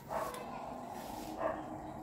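A dog whining, a thin high pitched sound.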